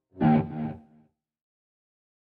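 Yamaha Revstar RS720BX electric guitar played through a distorted Line 6 Helix snapshot: a short burst of distorted chording a moment in, muted after about a second.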